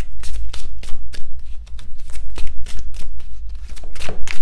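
A deck of oracle cards being shuffled by hand, the cards sliding and slapping together in quick, irregular strokes over a steady low hum.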